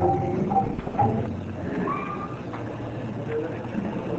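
Indistinct voices of a gathering, in short broken fragments, with a few light knocks.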